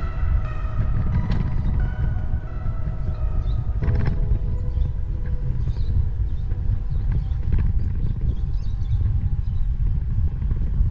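Wind buffeting the microphone of a handlebar-mounted camera on a moving bicycle: a loud, uneven low rumble throughout. Background music fades out in the first few seconds.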